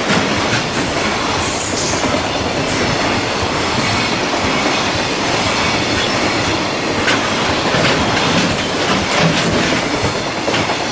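Loaded container wagons of a JR Freight freight train rolling past close by, a steady loud rumble of steel wheels on rail with clickety-clack over the rail joints. Faint high wheel squeals come and go.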